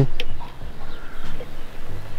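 A metal key blank being seated and clamped in a key-cutting machine's jaw: a sharp click just after the start, then faint handling sounds over a low hum.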